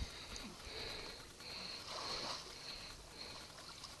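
Faint, intermittent splashing and sloshing of water, with no engine running.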